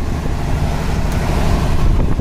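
Fishing boat's engine running steadily, a continuous low drone.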